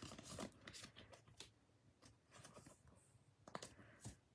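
Near silence with faint rustling and light clicks of trading cards being handled in the hands, a slightly louder click a little after three and a half seconds in.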